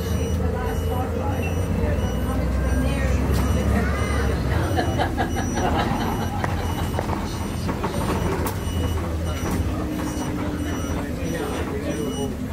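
Inside a moving bus: the engine's steady low rumble and the cabin's rattles as it drives, with a repeating high electronic beep over it.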